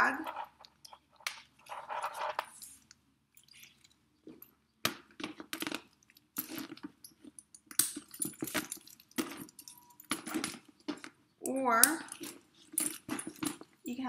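Metal snap-hook clasps on a leather bag strap clicking and clinking in scattered short clicks as the strap pieces are handled and clipped together. A voice is heard briefly twice, early on and about twelve seconds in.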